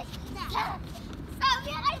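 A small child's high-pitched squeals and babbling, with the loudest squeal about one and a half seconds in.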